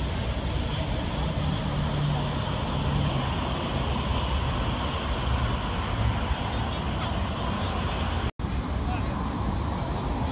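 Steady road-traffic noise with a low rumble. The sound cuts out for an instant about eight seconds in.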